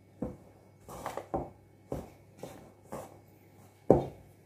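Dough being worked by hand in a stainless steel mixing bowl: a series of short, dull knocks, about two a second, with the loudest one near the end.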